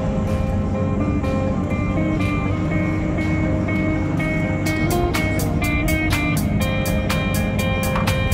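Background music: a melody of held notes, joined a little past halfway by a quick, regular beat.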